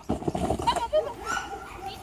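A dog handler's excited, high-pitched wordless calls urging her dog on during play, loudest in the first second and then trailing off.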